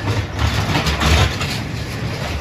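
Spinning roller coaster car rolling past close by on steel track, its wheels rumbling loudest about a second in.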